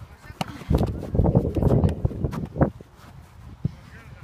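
Muffled rumble of handling and wind on a phone microphone, loudest in the first half, with a few sharp knocks of a football being kicked and bounced.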